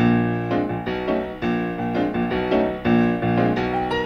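Jazz piano from a 1960s soul-jazz record, playing notes and chords in quick succession.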